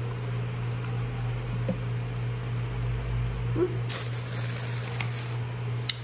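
Quiet room tone: a steady low electrical hum, with a couple of faint short mouth sounds as a thick smoothie is sipped through a straw.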